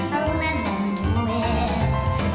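Musical theatre song played back for a dance solo: a singer over a steady instrumental backing with a firm bass.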